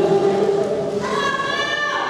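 Drawn-out yelling voices. A lower voice comes first, then from about halfway a high-pitched voice holds one long yell that drops in pitch at the end.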